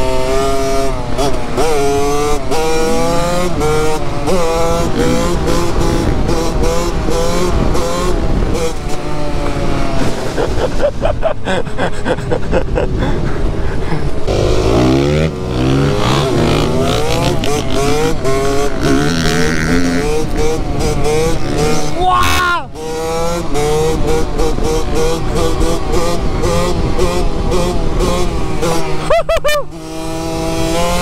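KTM 65 two-stroke dirt bike engine under hard acceleration, its pitch climbing through each gear and dropping at each shift. There is a sharp drop in engine sound about twenty-two seconds in.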